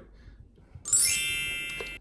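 A bright chime or sparkle sound effect added in editing. About a second in, a quick upward sweep of many high ringing tones sounds, then fades and cuts off near the end.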